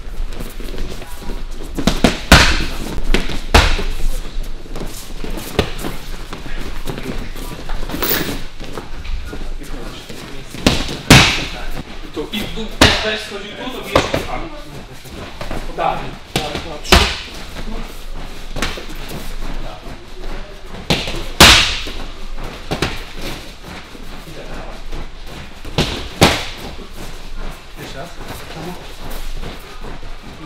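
Boxing gloves striking focus mitts: sharp slaps, single hits and short combinations, coming irregularly a few seconds apart.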